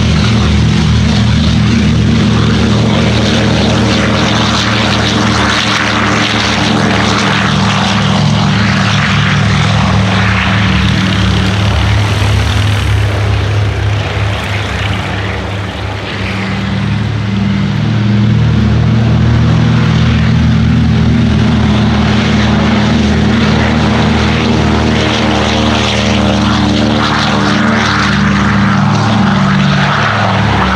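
Twin radial piston engines of Douglas Dakotas running at high power as the aircraft roll past one after another on their grass take-off runs, a deep steady propeller drone. The sound dips briefly about halfway through, then swells again as the next aircraft comes by.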